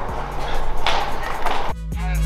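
Background music. A short noisy burst sounds a little under a second in, and near the end the music switches to a louder track with a deep, heavy bass.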